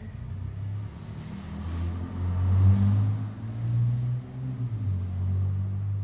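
Low engine rumble, its pitch rising a little and settling back, loudest around the middle.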